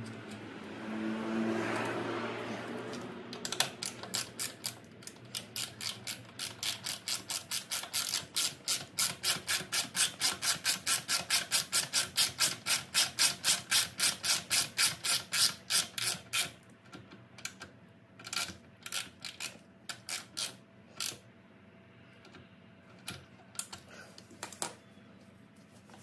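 Hand ratchet wrench clicking as it drives a docking-hardware bolt into a motorcycle's fender strut. The clicks run in a steady train of about four a second for over ten seconds, then slow to a scattered few as the bolt is snugged. A short rush of noise comes before the clicking starts.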